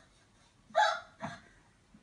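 Alaskan malamute giving two short, sharp vocalizations about half a second apart, the first louder, reacting to seeing itself on TV.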